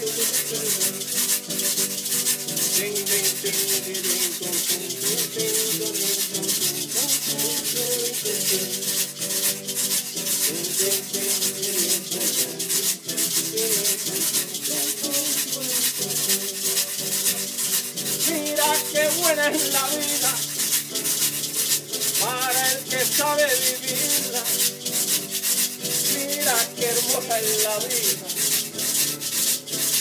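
Instrumental break of Puerto Rican jíbaro-style acoustic music: a guitar playing chords and a plucked melody over a continuous fast scraped-percussion rhythm.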